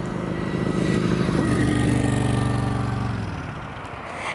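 A motorcycle passing by: its engine note grows louder over the first two seconds, then drops slightly in pitch and fades away.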